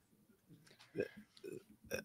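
Near silence in a pause of conversation, broken by two brief, soft vocal sounds from a man, about a second in and again half a second later.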